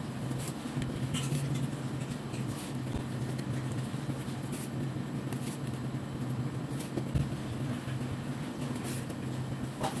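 Brush pen tips stroking and tapping on paper, giving scattered light ticks and scratches over a steady low hum.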